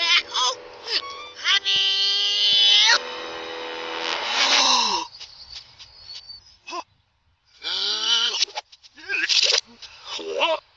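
Cartoon character voices played backwards, with a long high-pitched cry about two seconds in, over a steady music backing. The sound nearly drops out around the middle, then short backward vocal bursts return near the end.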